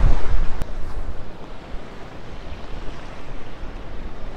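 Small waves washing onto a sand beach, with wind gusting over the microphone, heaviest in the first second. A single sharp click about half a second in.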